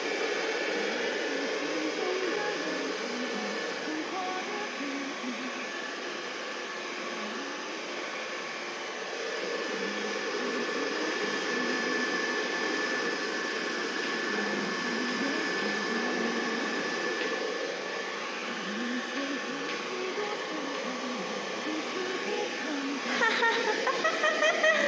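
A small electric blower motor runs steadily: an even whooshing noise with a constant high whine over it.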